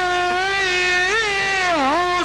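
Male Uzbek folk singer holding one long sung note with small ornamental wavers, the pitch dipping and rising again near the end.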